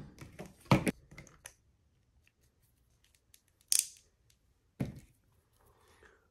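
Hard plastic action-figure parts clicking and knocking as a tail piece is worked into a socket in the figure's body: a loud click under a second in, a few small ticks, a short scraping rasp past the middle, and another knock near the end. The part is a stiff fit.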